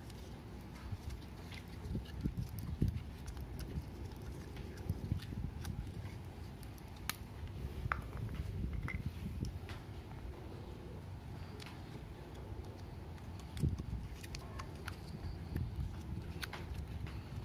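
Close handling of grey PVC pipe fittings and a roll of thread seal tape as the tape is wrapped onto a threaded adapter: scattered light plastic clicks and knocks over a low rumble.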